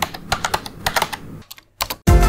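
Computer keyboard typing: a quick, irregular run of key clicks, with a short break near the end and then two more clicks.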